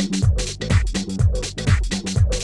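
Progressive house music: a four-on-the-floor kick drum about two beats a second, off-beat hi-hats between the kicks, and a steady bass line underneath.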